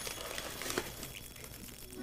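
Faint rustling of packing paper with a few light clicks as a small HOn3 model flat car is unwrapped and handled.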